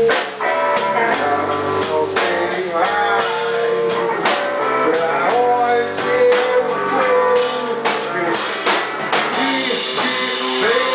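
A rock band playing live: a lead guitar line with bent, sliding notes over a drum kit keeping a steady beat of frequent hits.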